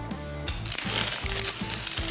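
Background music, joined about half a second in by a loud, dense crinkling of clear plastic rim tape being handled and worked into the rim.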